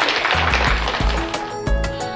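Audience applauding, fading out as music with deep bass notes comes in about a third of a second in and takes over.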